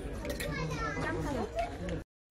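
Indistinct voices, a child's among them, over a steady background murmur.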